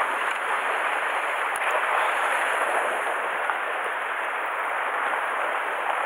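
Sea surf washing over shore rocks: a steady, even hiss of breaking water with no separate crashes standing out.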